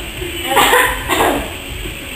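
Two short barks, about half a second apart.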